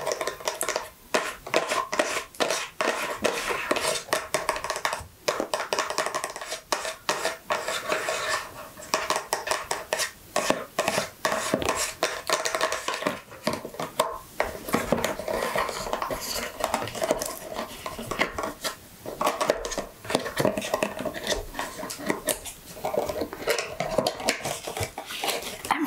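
Long fingernails tapping and scratching on a cardboard cosmetics box, a dense run of quick light clicks with short pauses between bursts.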